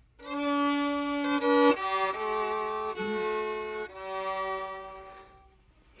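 Solo fiddle playing a slow hymn phrase in a few long held notes, dying away near the end.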